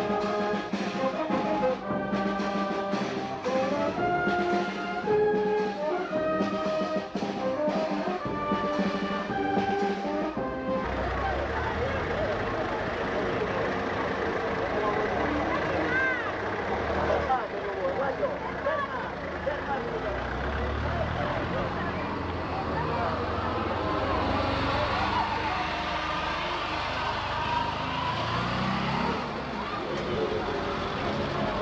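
A brass band playing a melody, which cuts off abruptly about a third of the way in. After that comes the murmur of a crowd's voices over a low rumble.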